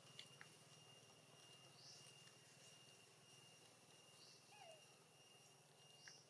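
Near silence: faint outdoor ambience with a steady thin high-pitched drone and a few faint short chirps.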